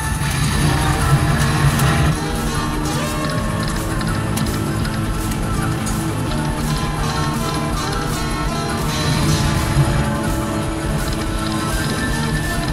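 Video slot machine playing its free-games bonus music, loud and steady, as the reels spin.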